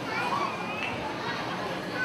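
Background chatter of many children talking at once, with high voices rising and falling over a general crowd murmur.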